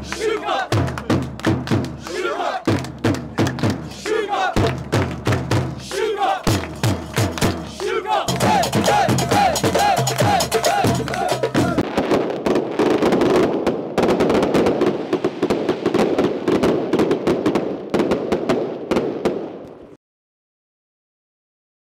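A handheld frame drum beaten in a quick repeating rhythm while a group of men chant together. About halfway through it gives way to the dense, continuous shouting and chatter of a packed crowd.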